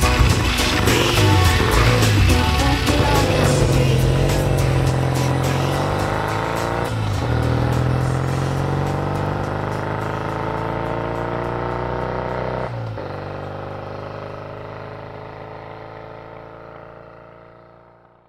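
Classic Triumph parallel-twin motorcycle pulling away and accelerating, its engine note climbing and breaking twice as it changes up a gear, then fading steadily as it rides off into the distance. Pop music plays underneath.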